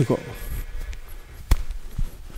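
A single sharp knock about one and a half seconds in, from a badminton shoe planting on the court floor as the player steps, over quiet shuffling of feet.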